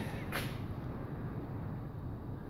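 Quiet steady background noise with a low rumble, and a brief soft hiss about a third of a second in.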